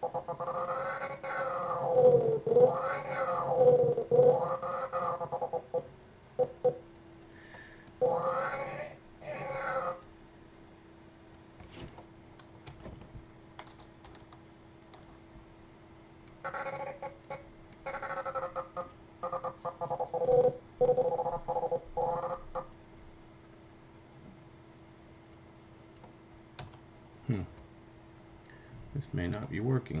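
A man's voice in three stretches of sound without clear words, with the quiet gaps between them broken by clicks of a computer keyboard and mouse. A faint steady hum runs underneath.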